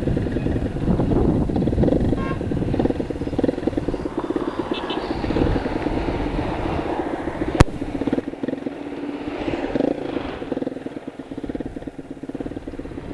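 200cc Gladiator GP-2 motorcycle engine running steadily on the move, with wind and road noise. A single sharp click comes about two-thirds of the way through, and the engine note drops a little after it.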